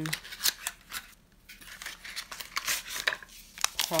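A paper packet of powdered Rit dye being handled and opened: a quick run of crisp clicks and rustles, in two bursts.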